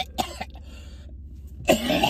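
A man coughing and hacking to clear his throat, which the mouthwash he swallowed has burnt. There are a couple of short coughs at the start, a brief lull, and a harsher cough near the end, over a steady low hum of the car cabin.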